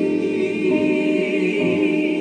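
Small gospel vocal group singing long held notes in harmony, with a synthesizer keyboard playing along.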